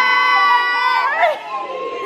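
Women shrieking with excitement in one long, high, held scream that breaks off with a swoop about a second in, followed by quieter squealing and chatter.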